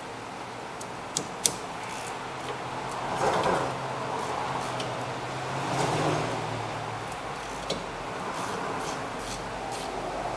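Hand-tool handling at a car's rear disc brake over a steady workshop hum: a few light clicks about a second in and near the end, and two swells of scraping noise around three and six seconds in, as a wrench is fitted onto the caliper bolts.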